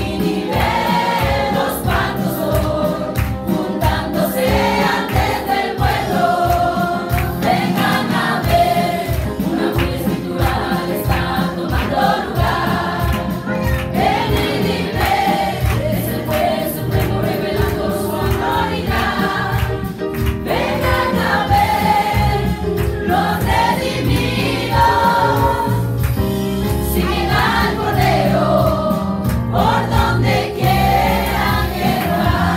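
Group of women singing a Spanish-language gospel hymn together through handheld microphones, amplified over a loudspeaker system, with a steady low beat under the voices.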